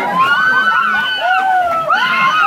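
A group of young people shrieking, shouting and laughing at once, many high voices overlapping, as a human pyramid topples into the water, with some splashing.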